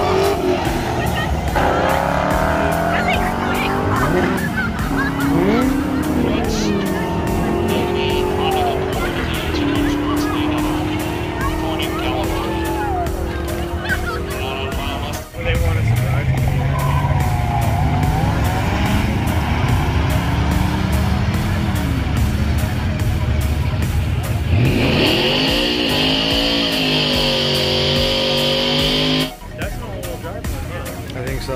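Drag-racing street cars revving and accelerating hard down the strip, engine pitch rising and falling through the gears, in separate runs that each start abruptly. Near the end one engine is held at steady high revs under a loud, steady high-pitched squeal, typical of a tyre burnout before staging.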